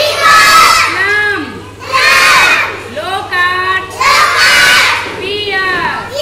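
A large group of young children shouting together in loud bursts, about one every two seconds.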